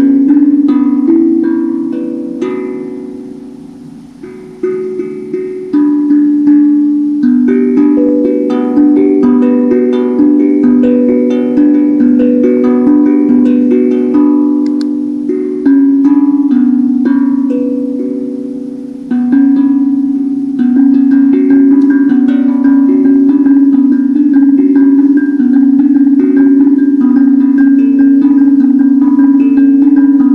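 Handpan (hang drum) played with the hands: single ringing notes that fade out, forming a slow melody with a brief lull a few seconds in. About two-thirds of the way through it changes to a fast, continuous run of rapidly repeated notes.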